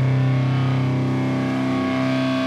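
Distorted electric guitar and bass holding one sustained chord that rings on steadily and fades slightly, with no drums.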